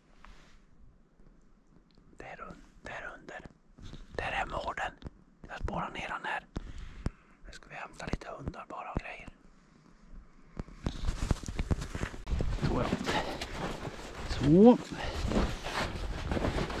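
A man whispering for several seconds. About eleven seconds in, a steady rushing noise takes over, with a short rising tone near the end.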